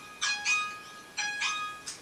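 Weather-app alert chime: a two-note electronic tone repeating about once a second, signalling a flood warning.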